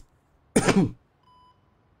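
A man clears his throat once, sharply, about half a second in. About a second in, a short, faint electronic beep follows, a hospital heart monitor in the show's soundtrack.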